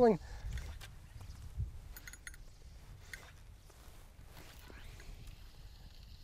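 Faint low rumble of wind on the microphone by open water, strongest in the first second or two, with a brief run of faint ticks about two seconds in.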